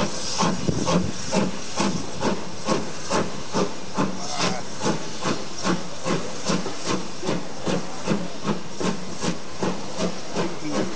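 Steam locomotive's exhaust chuffing at a steady beat, a little over two chuffs a second, over a constant hiss of steam, as it hauls its carriages along.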